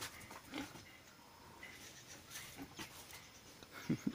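Pigs grunting faintly and rooting at a feed bowl, in scattered short sounds, with a louder low grunt near the end.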